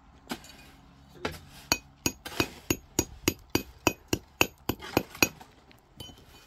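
Hammer striking broken stone: a few scattered knocks, then a quick run of about fifteen sharp, clinking blows at roughly four a second.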